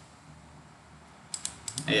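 A quick run of sharp clicks from a computer mouse and keyboard about a second and a half in, after a second or so of quiet.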